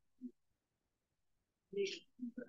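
Speech only: a couple of short spoken syllables at the start and near the end, with over a second of dead silence between them.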